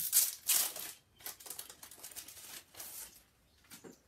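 A packet of decoupage tissue paper rustling and crinkling as it is worked open by hand. The rustling is loudest in the first second, then lighter crinkles come and go.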